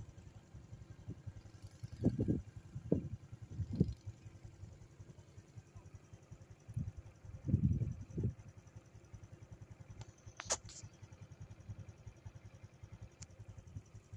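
Low, steady rumble of a vehicle in motion, heard from on board, with louder swells around two to four seconds in and again near eight seconds. A single sharp click comes about ten and a half seconds in.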